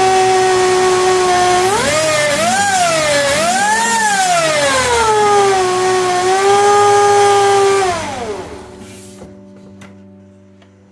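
Subaru FB25 flat-four running with an Eaton M65 Roots supercharger, giving a loud, steady supercharger whine. The whine rises and falls in pitch a few times as the engine is revved, then winds down and dies away as the engine is shut off about eight seconds in.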